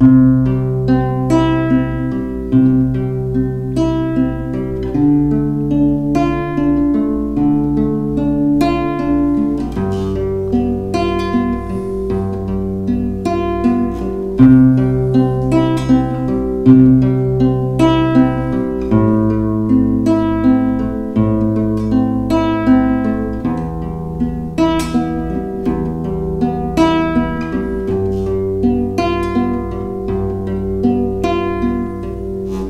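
Nylon-string classical guitar fingerpicked at a brisk pace: a bass note on each chord's root followed by the third, second, first, second and third strings, running through a progression of C, D minor, G7, A minor and E minor.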